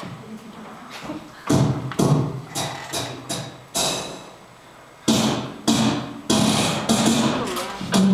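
Beatboxing into a handheld microphone: a run of sharp, irregularly spaced kick- and snare-like mouth hits that start about a second and a half in, each dying away quickly.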